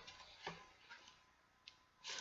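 Near silence: room tone, broken by three faint short ticks as the pages of a large book are handled and turned.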